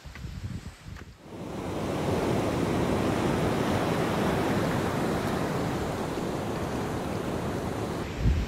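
Ocean surf breaking on the shore: a steady wash of wave noise that comes in about a second in, after a short, quieter stretch of low rumble.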